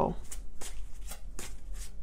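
Tarot cards being shuffled by hand: a series of soft, irregular papery flicks and slides.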